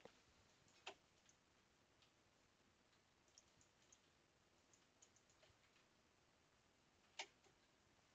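Near silence: room tone with a few faint, short clicks, one about a second in and a slightly stronger one near the end.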